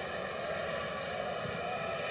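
Steady stadium crowd ambience from the broadcast feed: an even drone with faint steady tones running through it.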